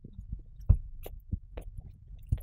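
Close-miked hamster rooting and nibbling at a carrot in loose, soil-like bedding: soft low thumps, the loudest about two-thirds of a second in, among scattered small crackles and clicks.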